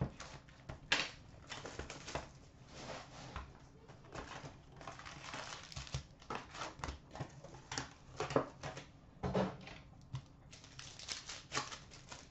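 A cardboard box of hockey cards being opened by hand and its foil packs pulled out and set down on a glass counter: an irregular run of rustles and scrapes broken by sharp light taps.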